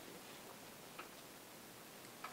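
Near-silent room tone with a few faint, light clicks about half a second apart.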